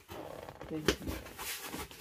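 A man's faint, muffled voice from behind a cardboard box, with the box being handled and one sharp knock just before a second in.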